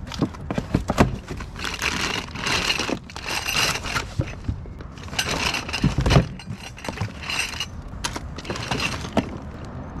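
Hands rummaging through a cardboard box in a plastic tote: cardboard flaps and clear plastic zip bags crinkle in several bursts, with small glass vials and roller-ball caps clinking against each other.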